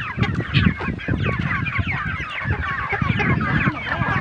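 A flock of village chickens clucking and calling, with many short overlapping calls throughout.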